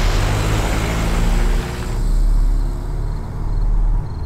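A car accelerating hard on a dirt road, its engine running loud with a note that rises partway through as the tyres churn up loose dirt.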